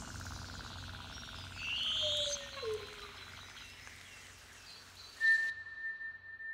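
Forest ambience in an electronic track's outro, with faint bird-like chirps and a brighter gliding call about two seconds in. About five seconds in, a steady high pure tone starts and holds.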